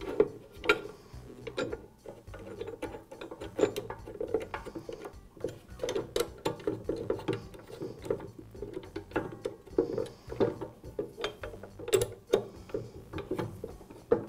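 A long Allen wrench turning the bolts that hold the fence to a chop saw base, giving a string of irregular metallic clicks as the bolts are driven in and the wrench is shifted between turns.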